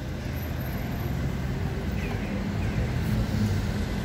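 Steady low hum of a motor vehicle's engine running in the street, with faint background voices.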